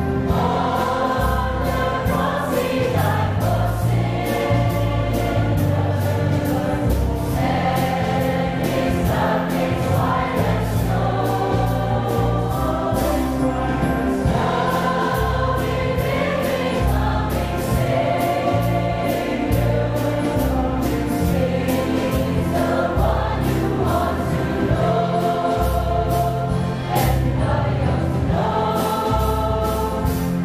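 Mixed choir of adults and children singing an upbeat gospel song, with instrumental accompaniment holding deep bass notes that change about once a second beneath the voices.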